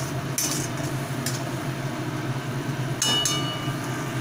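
A spatula scraping and clinking against a non-stick kadai as a tomato masala is stirred, with a few sharper knocks. A steady low hum runs under it.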